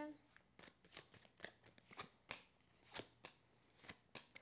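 A deck of tarot cards shuffled by hand: quiet, irregular flicks and slides of card against card.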